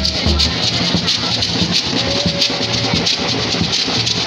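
Drumming with a bass drum and snare, and beaded gourd shakers (shekere) rattling in an even rhythm. The heavy bass drum strokes stop about half a second in, and the shakers and lighter drumming carry on.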